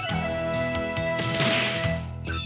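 Music of an animated TV jingle: a long held note over a steady beat, opening with a sharp whip-like crack and swelling into a bright crash about one and a half seconds in.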